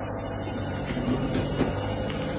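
Concrete mixer truck's diesel engine idling, a steady low hum.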